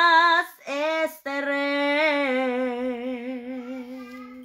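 A woman singing a Spanish-language ballad unaccompanied: a few short sung phrases, then a long final note with vibrato that fades out near the end.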